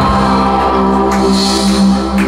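Live rock band with horns playing: sustained held chords over a steady low note, with deep bass coming in right at the start and a cymbal-like crash about a second in.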